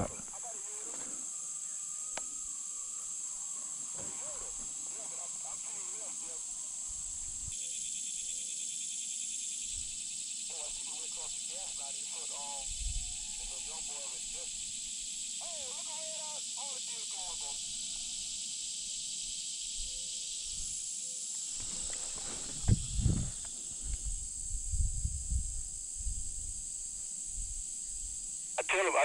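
Steady high-pitched drone of insects in summer woods. Near the end there is a stretch of rustling and low thumps.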